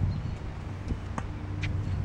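A few sharp knocks of a tennis ball in play, the clearest about a second in, over a steady low rumble.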